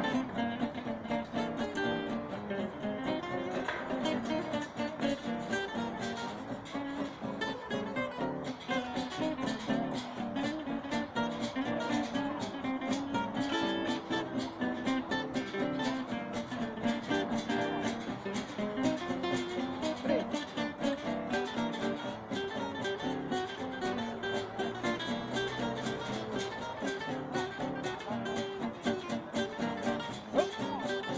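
Two acoustic guitars playing together, a continuous run of plucked and strummed notes.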